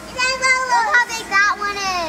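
A young child's high-pitched, wordless vocalizing, wavering up and down in pitch, then falling away near the end.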